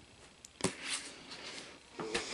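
A sharp tap about half a second in, then a soft rustle and scrape of cardboard laserdisc jackets being handled and slid across a stack.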